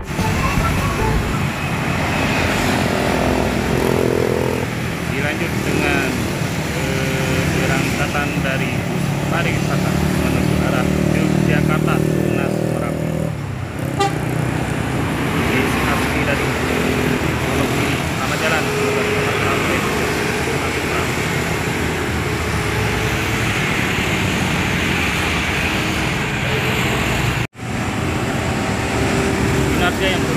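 Busy road traffic with motorcycles, cars and buses passing, and a bus horn sounding a run of steady tones from about 8 to 13 seconds in. The sound cuts out for an instant near the end.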